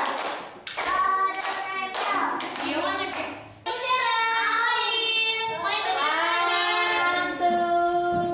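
A group of children singing together, with hand clapping in time during the first half, then holding long drawn-out notes in the second half.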